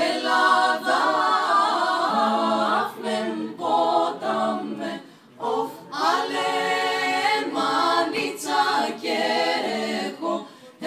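Women's a cappella vocal group singing a Greek folk song in several-part harmony, with no instruments. The phrases are broken by short pauses, the longest about five seconds in.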